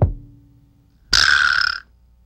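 Improvised percussion from a film score. A drum stroke right at the start leaves a low tone fading over about a second. Then a short, loud hissing burst, like a cymbal, comes about a second in and is cut off sharply.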